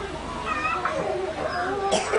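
Indistinct background voices, with a brief high, wavering cry about half a second in.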